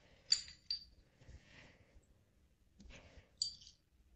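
A metal spoon scraping seeds and stringy pulp out of a halved spaghetti squash, with soft scraping and three short, sharp, ringing clinks of the spoon: two within the first second and one about three and a half seconds in.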